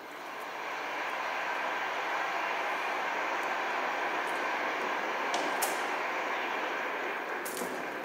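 Large crowd applauding, swelling over about a second and then holding steady, with a few sharp clicks in the second half.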